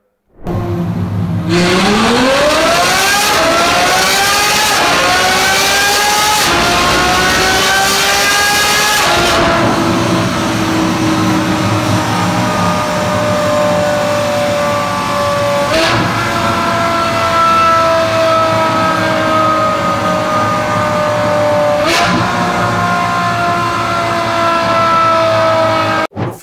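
Ferrari F12's naturally aspirated F140 V12 running a full-throttle dyno pull from first gear. The revs climb with about four quick upshifts in the first nine seconds, then run lower and slowly falling, and twice jump back up with a sharp crack. The engine is running a remap with a longer fuel cut-off and a richer mixture, meant to make the exhaust pop.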